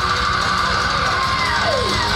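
Extreme metal band playing live at full volume: heavily distorted electric guitars in a dense, unbroken wall of sound over fast drumming, with a few falling pitch slides in the second half.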